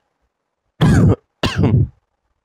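A man clearing his throat, two short loud bursts about half a second apart.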